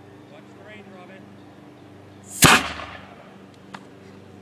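Home-built pneumatic tennis-ball cannon firing once, about two and a half seconds in: a sudden, pretty big blast of compressed air from its tank pumped to about 100 psi, dying away within half a second.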